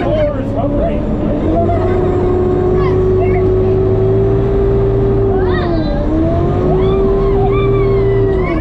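Sherp amphibious ATV's diesel engine and drivetrain running, heard from inside the cabin as a loud steady whine over a low rumble; the pitch dips briefly about six seconds in and then climbs back up.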